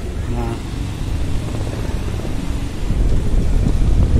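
Motorcycle riding through city traffic: engine and road noise with wind on the microphone, growing louder about three seconds in.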